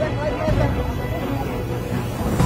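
Indistinct voices of people talking over background music, with a steady low rumble underneath.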